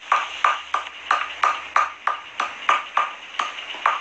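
A rapid, uneven run of short ringing pings, about three a second.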